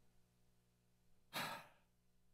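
A man's single short sigh, an audible breath out, about a second and a half in; otherwise near silence.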